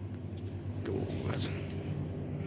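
Steady low hum of café machinery, with a few faint clicks.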